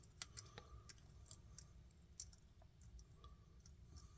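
Near silence: faint, scattered clicks of a small 3D-printed plastic duct piece being handled and set against a model, over the low steady hum of an air conditioner.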